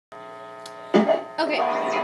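Steady electrical hum from a plugged-in electric guitar rig, a buzz with many even overtones. About a second in, a short loud sound cuts in over it.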